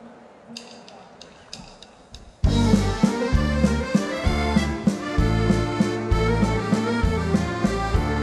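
A few light, quick clicks over quiet crowd noise, then about two and a half seconds in a live band starts loudly into an instrumental waltz intro with a steady beat.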